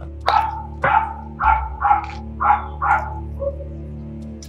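A dog barking, about six quick barks in a row roughly half a second apart, over a steady music bed.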